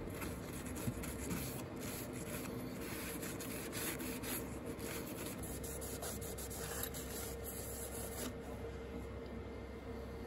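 Tissue rubbing and wiping over the gold contact pads of a server CPU and around its socket: a soft, scratchy wiping sound with faint small ticks, over a faint steady hum.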